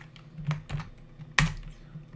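Keystrokes on a computer keyboard: a few scattered taps, the loudest about one and a half seconds in.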